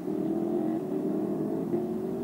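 A motor vehicle engine running with a steady drone whose pitch falls slowly.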